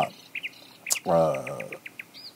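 A small bird chirping: short high chirps here and there, then a quick run of about five near the end.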